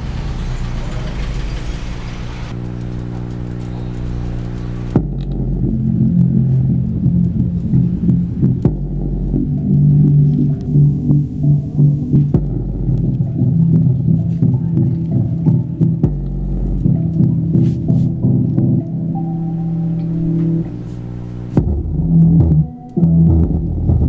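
Subwoofer of a CDR King Jargon 2.1 computer speaker system playing bass-heavy music with a pulsing beat over a loud, steady mains hum, a fault the owner hasn't been able to fix. About five seconds in, the sound turns to almost all bass.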